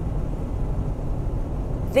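Steady low rumble inside a car's cabin, with the car's engine or road noise running underneath.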